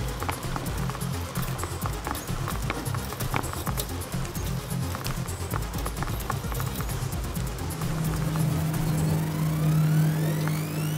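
Background music with a steady low beat and light percussive clicks. A held low note comes in near the end, with a rising sweep.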